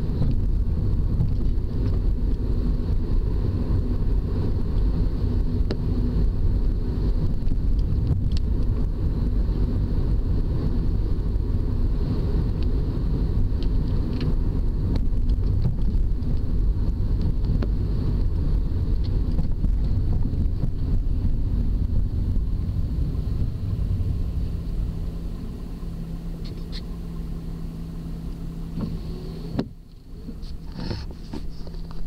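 Car road and engine noise heard from inside the cabin while driving, a steady low rumble. Near the end it drops to a quieter steady engine hum as the car slows.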